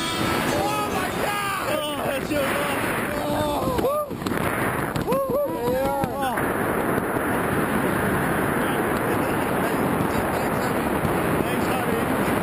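Wind rushing and buffeting over the camera microphone under an open tandem parachute canopy. Over it, a string of short whoops that rise and fall in pitch come in the first half, twice: about half a second in and again around four to six seconds in.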